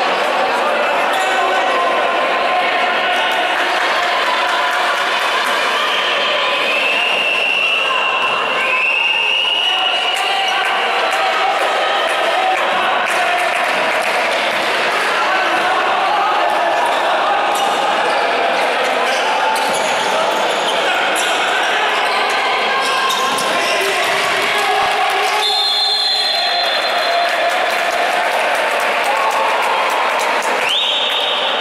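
Live basketball play in an echoing sports hall: the ball bouncing on the court, shoes squeaking, and players and spectators calling out. A short high whistle sounds near the end.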